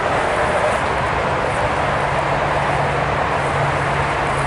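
Steady highway traffic noise, an even rush of passing vehicles, with a low engine hum joining about two seconds in.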